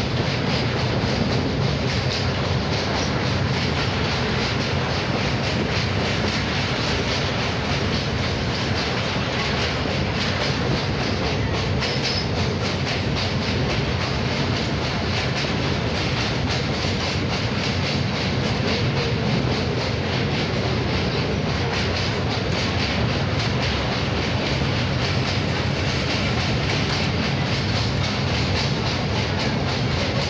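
Train running across a riveted steel truss rail bridge, heard from inside the coach: a steady, loud noise of the wheels on the rails, with faint clicks, that does not let up.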